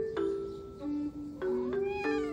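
A cat meows once near the end, the call rising in pitch, over light background music.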